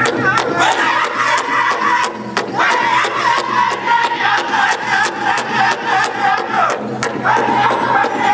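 Powwow drum group singing a fancy dance song in high voices over a fast, steady drum beat of about four strokes a second. The singing drops out briefly about two and a half seconds in and again near the end while the drum keeps going.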